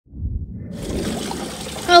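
Steady trickling of stream-fed pond water, with low wind rumble on the microphone at the start. The water hiss comes in just under a second in.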